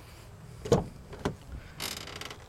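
The driver's door of a 2010 Ford Transit Connect being opened: a sharp click as the handle releases the latch, a second knock about half a second later, then a brief scrape near the end as the door swings open.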